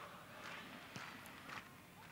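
Faint football stadium ambience during open play, with two soft knocks about a second in and a little after halfway.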